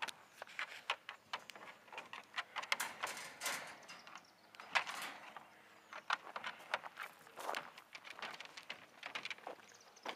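Golden retrievers moving about in a wire dog kennel: a run of irregular clicks, knocks and rattles with some scuffing.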